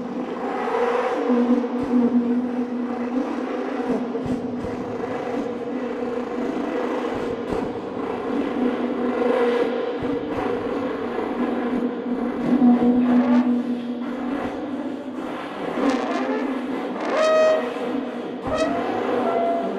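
Trombones playing long, sustained low drones in free improvisation, with a rising slide glide near the end.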